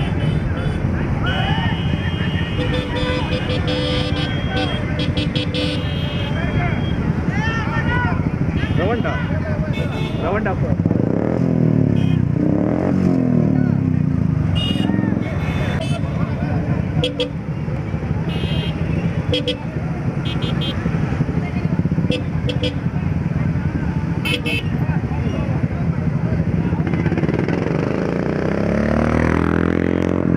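A crowd of motorcycles and scooters running together at low speed in a procession, with horns tooting on and off and people's voices shouting over the engines.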